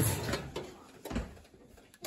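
A single soft, low thump about a second in, against quiet room tone.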